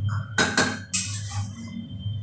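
A spatula scraping and knocking against a kadai while food is stirred, with sharp strokes about half a second in and again about a second in.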